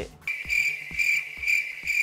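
Crickets chirping, a steady high trill that swells about twice a second: the stock awkward-silence sound effect.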